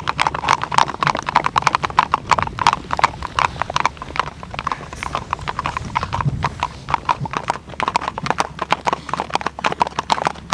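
Two Icelandic horses tölting across ice, their hooves striking it in a fast, even run of sharp clicks that thins a little in the middle.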